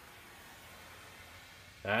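Faint steady hiss, with a man starting to speak near the end.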